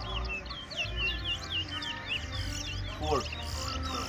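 Caged towa towa seed finches singing in a song contest: a rapid, continuous stream of short looping whistled notes, with a low background murmur underneath.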